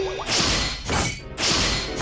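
Three short noisy whooshes in quick succession, each under a second. They are cartoon sound effects for a spaceship's wall-mounted tube launchers, set off by a pressed floor button.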